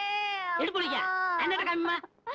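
A woman's high, drawn-out cry of pain, held and sliding slightly down in pitch, then breaking into shorter wailing sounds, as she sits hurt on the ground after a fall.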